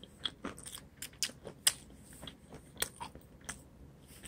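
A person chewing food close to the microphone: scattered, irregular soft clicks and crunches.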